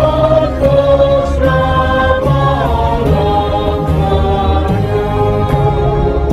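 Slow church music with long held sung notes, in the manner of a choir, over a steady low bass, the chords changing every second or two.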